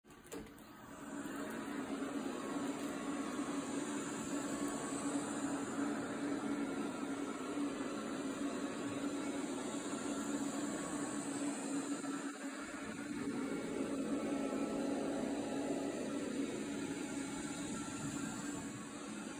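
Robot vacuum cleaner running on a rug: a steady motor-and-suction hum with a low steady tone. It dips briefly about two-thirds through, then swells a little for a few seconds.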